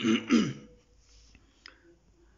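A man clears his throat in two quick bursts right at the start, followed by quiet room tone with a faint click or two.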